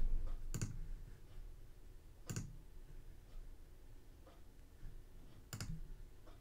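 A few sharp clicks at a computer: three distinct ones about half a second, two and a half and five and a half seconds in, with fainter ticks between, over a low room background.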